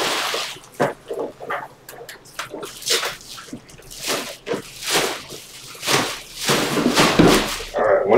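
Trading card packs and cards being handled: irregular crinkling of foil wrappers with short crackles and ticks, busier around the middle and near the end.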